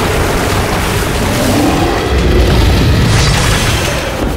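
Loud booming, rumbling sound effects with music underneath, swelling about two seconds in.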